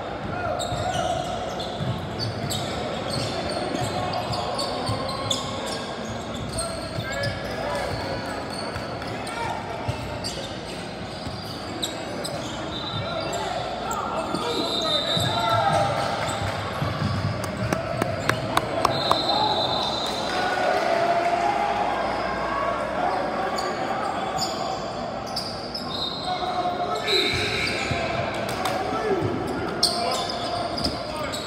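Basketball bouncing on a hardwood gym floor during play, with a quick run of sharp bounces a little past the middle. Players and spectators call out throughout, and the sound echoes around the large gym.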